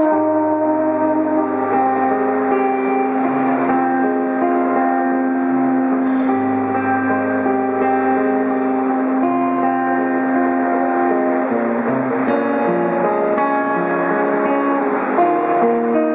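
Acoustic guitar playing an instrumental passage of a live song, with no singing, over long held accompanying notes and a low bass line.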